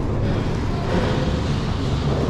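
Steady low mechanical rumble and noise of a gondola station's machinery.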